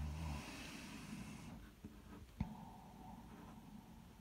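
Fineliner pen drawing on paper: a soft scratchy stroke lasting about a second and a half, with a low bump at the very start and a sharp tap a little past halfway.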